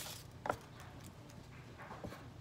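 A single light knock on a wooden cutting board about half a second in, as a peeled onion and kitchen knife are handled on it; otherwise quiet.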